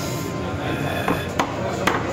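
A long machete-like knife striking cooked birria meat on a thick round wooden chopping block: about three sharp knocks in the second half, amid background talk and music.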